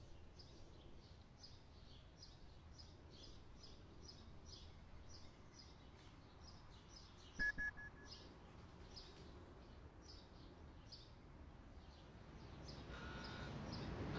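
Faint bird chirping, short high chirps repeated about two or three times a second, over a quiet outdoor background. About seven and a half seconds in there is a brief click with a few short high beeps.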